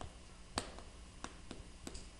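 Chalk on a blackboard while a word is being written: about four faint, short clicky taps and strokes.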